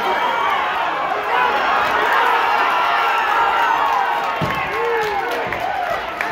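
Ringside boxing crowd shouting and cheering, many voices overlapping at once. A low thump comes about four and a half seconds in.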